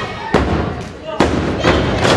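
Two sharp slaps on the wrestling ring's canvas mat, a little under a second apart, typical of a referee's hand counting a pinfall, with a crowd shouting.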